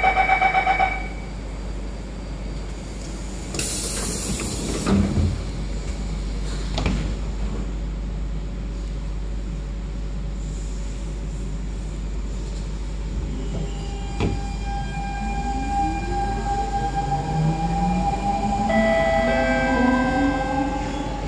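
Inside a Siemens C651 metro car: a pulsing electronic chime right at the start, then a sharp hiss of air and a knock as the train readies to leave. In the second half, the GTO-VVVF inverter traction drive starts to whine, its tones climbing steadily in pitch as the train pulls away and accelerates.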